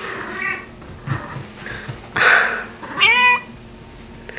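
A house cat meowing several times, the clearest a rising meow about three seconds in.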